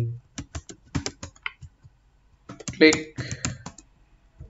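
Computer keyboard being typed on in quick, irregular keystrokes, a short pause, then more keystrokes. A brief spoken word cuts in about three seconds in.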